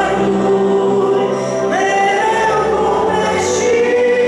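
A woman singing a gospel song through a microphone over a sustained electronic keyboard accompaniment. She holds long notes and steps up in pitch about two seconds in.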